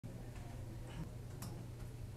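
Low steady room hum with a few faint clicks at irregular intervals.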